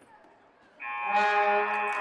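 Game-clock buzzer sounding as time expires: a steady electronic tone that starts suddenly about a second in and holds level, marking the end of regulation.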